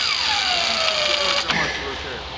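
A motor's high whine over a steady hiss, sliding down in pitch and cutting off sharply about one and a half seconds in.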